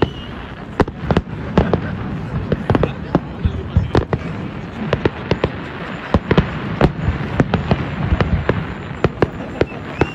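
Fireworks display going off: a rapid, irregular series of sharp bangs and crackles, several a second, as aerial shells burst and rise.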